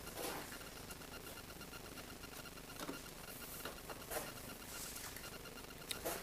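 Faint handling noises, a few light clicks and rustles, over a faint steady high-pitched hum; no engine is running.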